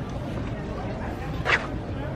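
One short, sharp cry or yelp about one and a half seconds in, over a steady background of crowd murmur.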